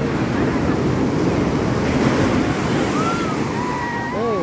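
Sea surf breaking and washing up the shore in a steady rush, swelling to its loudest about halfway through.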